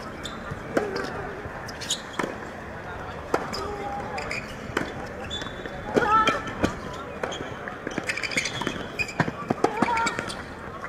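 Tennis rally on a hard court: a ball is struck by rackets and bounces, making sharp hits about once a second or so, with a quicker run of clicks near the end.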